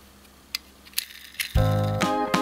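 Three light clicks about half a second apart from a diecast model car being handled in the fingers, then background music with a low pulse comes in near the end and is the loudest sound.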